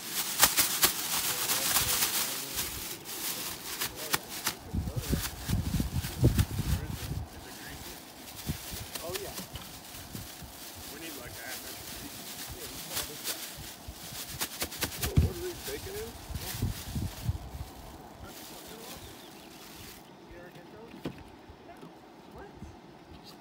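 Thin plastic grocery bag rustling and crinkling as it is handled, with brook trout being shaken in flour and seasoning to coat them. The crinkling is loudest in the first few seconds, then goes on as scattered crackles.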